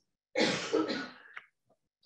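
A woman briefly clears her throat once, followed by a faint click about a second and a half in.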